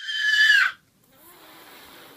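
A toddler's single high-pitched squeal, about three-quarters of a second long, dropping in pitch as it ends, followed by a faint, quiet stretch.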